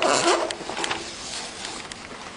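Plastic laminating film and paper crackling and rustling under hands as they are smoothed over the laminator's table and roller. The crackling is loudest in the first half second, then dies away to soft scattered clicks.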